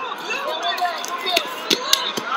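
Several voices shouting over one another, with a few sharp slaps in the second half from the wrestlers' hand-fighting and a shot to the legs on the mat.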